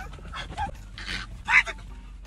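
A man's short frightened yelps and whimpers, a few brief cries with the strongest about one and a half seconds in, as he shrinks away from a camel's head pushed in through the car window.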